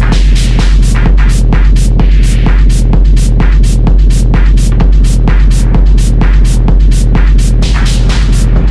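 Techno track with a loud, steady deep bass and a fast, even high ticking on top, about four ticks a second.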